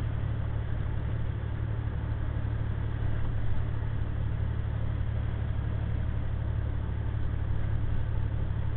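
Steady drone of a 2009 International semi truck's diesel engine and road noise, heard inside the cab while cruising at highway speed.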